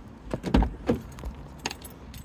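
BMW 3 Series driver's door being opened by its outside handle, its latch giving a few clicks and knocks, the loudest about half a second in, with keys jangling in the hand.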